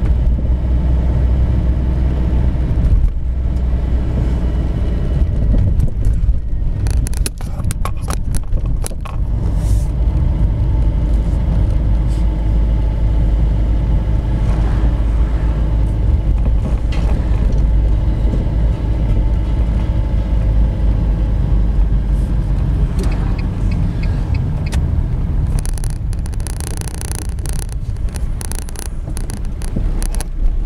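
Car driving slowly along a street, heard from inside the cabin: a steady low engine and road rumble. A quick run of clicks or knocks comes about seven to nine seconds in, and a faint high-pitched sound near the end.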